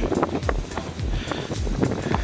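Wind buffeting the microphone on a boat out on the water, with low thumps about twice a second.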